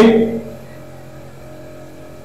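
A man's spoken word ends about half a second in, then a pause in his talk with only a steady low background hum.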